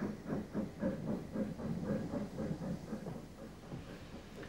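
Steam train hauled by an LBSC A1X Terrier tank engine passing close by: a quick, even rhythm of about six beats a second over a low rumble, fading toward the end as the coaches roll past.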